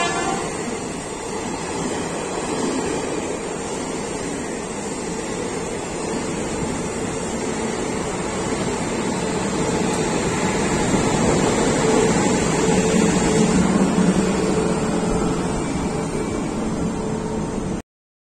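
Coaches of the 22615 Tirupati–Coimbatore Intercity Superfast Express running past at speed: a steady rumble and rattle of wheels on the track. It swells a little midway and cuts off suddenly near the end.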